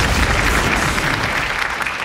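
Studio audience applauding, with a low rumble underneath in the first second.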